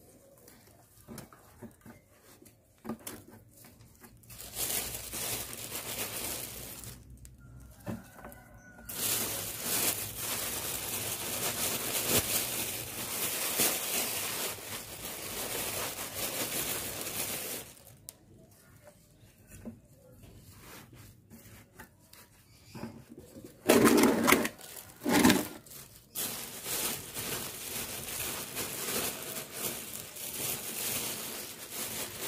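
Dry onion and garlic skins rustling and crackling in stretches as they are handled and pressed into potting soil, with two louder short sounds near the end.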